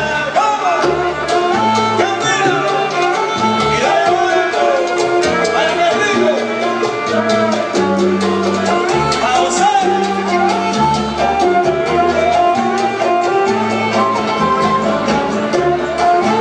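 Live salsa band playing loudly and steadily, a stepping bass line under melody lines.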